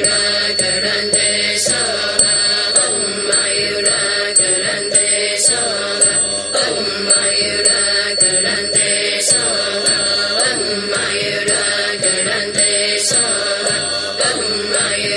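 A Buddhist mantra chanted in melody over musical accompaniment, the voices rising and falling steadily.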